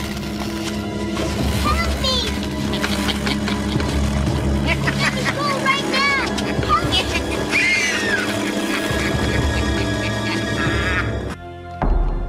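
Girls screaming and shrieking in fright over a loud, tense music score with a steady low drone. It all cuts off sharply near the end, and a short thump follows.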